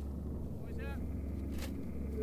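A vehicle engine idling steadily as a low, even rumble. A short voice sound breaks in briefly a little before the middle.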